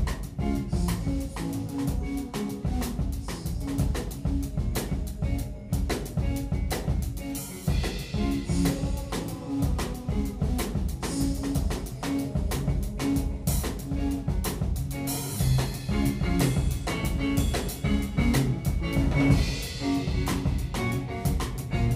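Live instrumental rock band: a drum kit comes in at the start and keeps a busy, steady beat under guitar and a repeating low note pattern.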